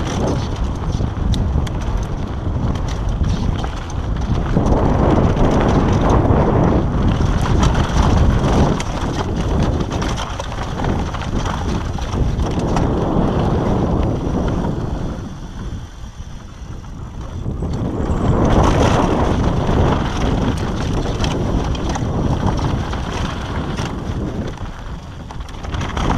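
Downhill mountain bike running fast down a dirt trail: wind rushing over the camera microphone along with the rumble and rattle of tyres and bike over rough ground, swelling and easing with speed and dropping briefly about two thirds of the way through.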